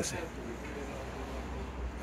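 A man's voice ends a word, then a low, steady outdoor background rumble with no distinct event.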